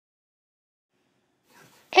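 Silence for about a second and a half, then a faint brief sound and, at the very end, the start of a loud high-pitched shout of "Andy!".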